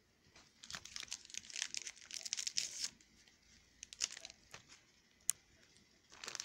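Trading card pack wrapper being torn open and crinkled by hand: dense crackling for about three seconds, then a few scattered crinkles and a single sharp click near the end.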